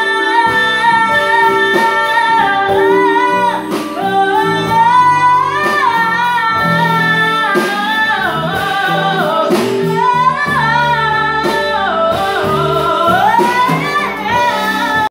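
A woman singing a slow melody with long held notes that slide between pitches, accompanied by a live band with electric keyboard and drums.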